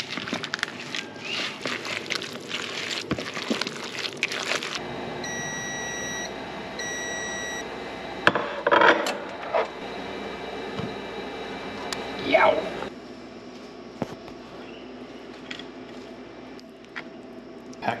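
A silicone spatula scrapes and stirs a filling in a plastic mixing bowl. Then a Cuisinart countertop toaster oven, running with its fan humming, gives two bursts of electronic beeps, its signal that the timer has run out. A couple of louder handling knocks follow before the hum stops.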